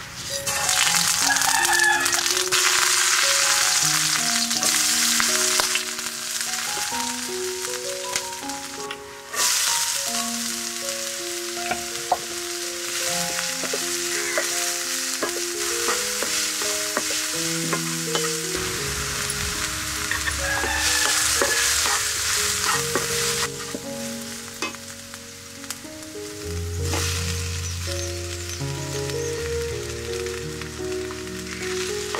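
Chopped onion and green chilli frying in hot oil in an iron kadai, a loud sizzle with spatula stirring. The sizzle swells sharply just after the start and again about nine seconds in, easing off between, with a simple instrumental melody underneath.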